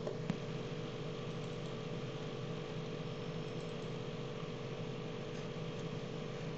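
Steady background hum and hiss with a faint steady tone; a single click sounds about a third of a second in.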